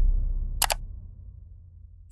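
A deep synthetic boom dying away, with a quick double click about half a second in: a mouse-click sound effect on an animated subscribe button.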